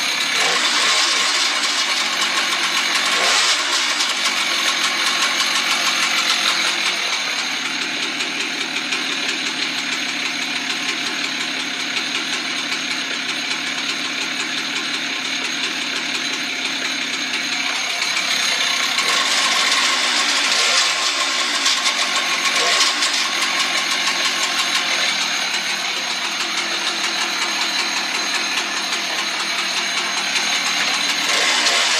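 Husqvarna chainsaw running continuously while cutting logs on a dull chain, the engine note dipping and climbing back several times.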